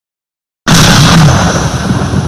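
Explosion sound effect: silence, then a sudden loud blast about two-thirds of a second in that slowly dies away.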